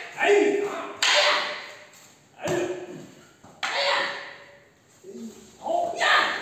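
Wooden aikido staffs (jo) striking together: about five sharp clacks roughly a second apart, each ringing off in the hall. A short shout comes near the end.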